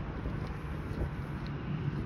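Steady outdoor street noise: a low rumble of wind and traffic, with no distinct events.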